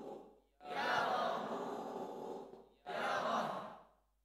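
A group of voices reciting Arabic practice words in unison in a chanting, sing-song way, in short phrases with brief pauses between them: a class drilling the spelling and reading of words from the Qaidah Nuraniyah primer.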